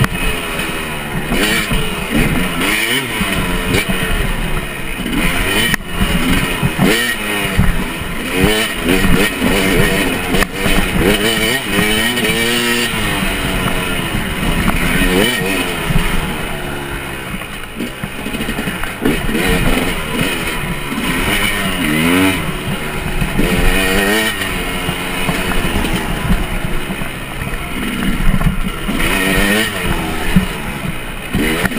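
KTM 250 EXC enduro motorcycle engine under way, its pitch rising and falling over and over as the throttle is opened and closed.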